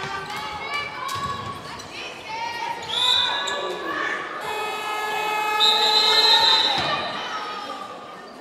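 A handball bouncing on a sports-hall floor amid players' and spectators' shouts, echoing in the large hall. In the second half a long held tone with a rich buzzy set of overtones sounds for about two and a half seconds.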